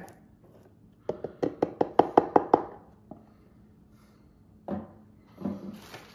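A quick run of about nine sharp, ringing taps against the crock pot's stoneware insert, getting louder as they go, then a single knock near the end.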